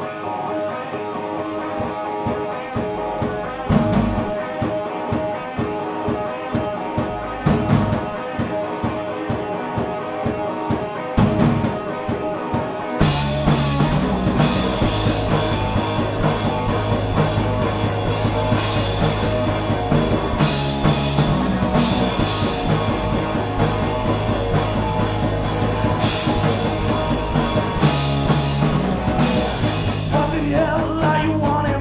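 A punk rock band playing a song's instrumental intro live. An electric guitar riff leads, broken by a few loud hits from the whole band. About thirteen seconds in, the drums and bass come in fully and the band plays on at a steady driving pace.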